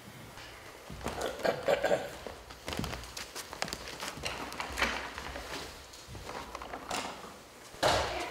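A person walking up and sitting down in a chair: footsteps, the chair shifting, and scattered knocks and thunks. A sharp knock near the end is the loudest sound.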